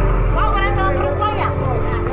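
A woman's voice speaking in short bursts over sustained background music.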